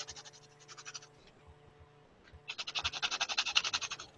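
Fingertip rubbing quickly back and forth over textured paper, a rapid run of scratchy strokes. The strokes are faint at first, pause, then come back louder for the last second and a half.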